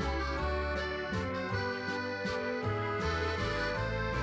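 Instrumental background music: held chords over a bass line that changes note every second or so.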